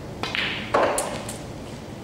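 Snooker cue striking the cue ball with a sharp click, then a louder knock about half a second later as the ball meets the table's balls or cushions, followed by two lighter clicks around a second in.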